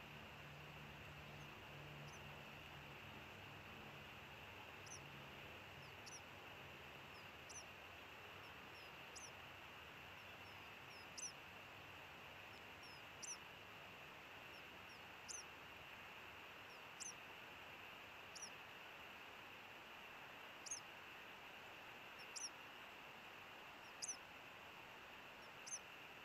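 Osprey giving short, high single chirps, one about every second and a half to two seconds, growing louder from about five seconds in, over a faint steady hiss.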